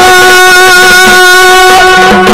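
Yakshagana accompaniment music: one note held steady over the shruti drone, with a few soft maddale drum strokes underneath.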